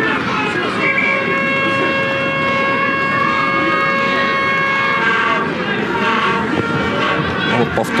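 A steady pitched horn sounds for about four seconds, starting about a second in and cutting off, over open-air background noise with voices.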